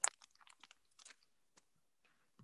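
A sharp click at the start, then scattered faint clicks and crackles that die away after about a second and a half.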